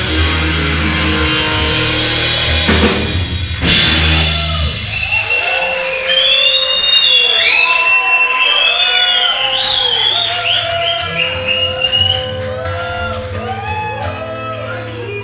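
Live blues-rock band closing a song: drums with cymbals and electric guitars in a final flourish, two big hits about three and four seconds in. Then the drums stop and higher, wavering, bending tones ring on.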